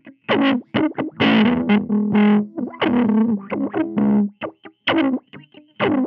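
Electric guitar through a Mesh Audio Juice Jawn envelope filter pedal, played as short, funky staccato notes and chords. Each note has a wah-like quack that sweeps down as it decays, with one longer held note about a second in.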